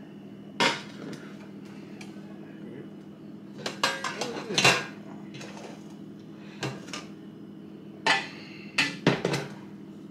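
Metal cookware knocking and clanking as a nonstick skillet and stainless stock pots are moved and set down on a glass-top electric stove. There is a sharp knock about half a second in, a cluster of clanks around four seconds and several more near the end, over a steady low hum.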